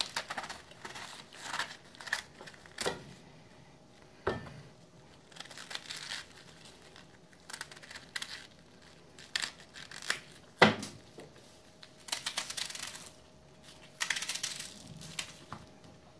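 Knife cutting through raw cabbage: crisp crunching and tearing of the leaves in irregular strokes as the hard core is cut out, with a few sharp knocks, the loudest about ten and a half seconds in.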